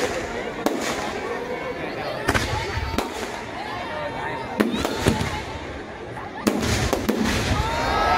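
Fireworks going off: about eight sharp bangs from aerial shells and crackers, spaced irregularly about a second apart, over background voices.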